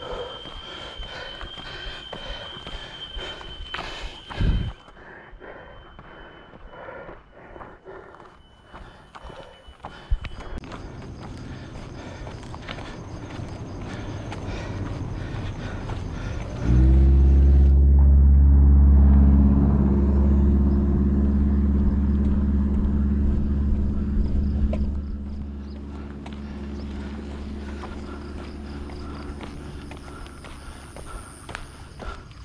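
Running footsteps on a paved road with a thin, steady high tone over them for the first ten seconds. A bit past halfway, a loud, steady low hum like a motor's starts suddenly and drowns them out, easing off near the end.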